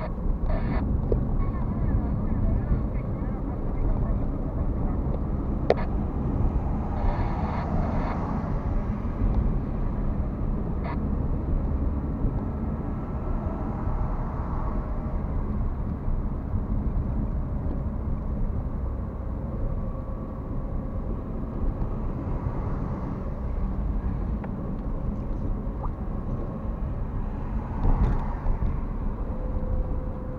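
Steady low rumble of a car driving at road speed, heard from inside the cabin: tyre and engine noise, with a couple of sharp ticks about six and eleven seconds in.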